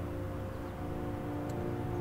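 Background orchestral music: a sustained chord of several held notes.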